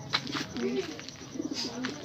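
A bird cooing: several low calls in a row, each curling up and down in pitch.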